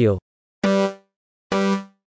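Two short, low electronic tones about a second apart, each at the same pitch and dying away quickly: a countdown sound effect in an animated intro.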